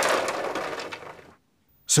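Ice cubes and water splashing and clattering in a plastic tub as a hand is pulled out of the ice water, dying away after about a second.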